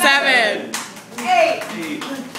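High-pitched voices laughing and calling out, with a few sharp hand claps among them.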